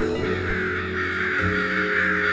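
A flock of crows cawing all at once in a dense, continuous clamour: alarm calls as the birds gather around a dead crow. Background music plays underneath.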